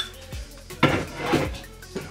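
Background music with a steady beat: a deep bass kick about once a second, with a louder pitched burst about a second in.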